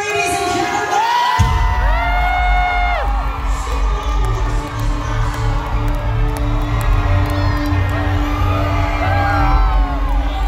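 Live metal band starting a song: a heavy, sustained low bass enters suddenly about a second and a half in, with the crowd cheering and whooping over it.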